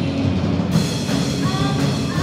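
Live rock band playing, drum kit to the fore under bass and guitar, with a voice singing over it in the second half.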